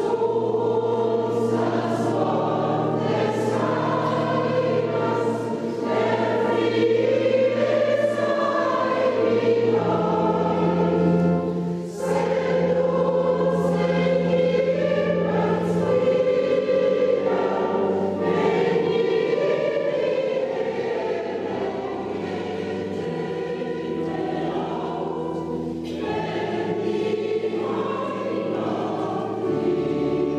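Church choir singing a sacred piece in several voices, over sustained low organ notes that change every few seconds. The singing runs in long phrases, with a brief dip about twelve seconds in.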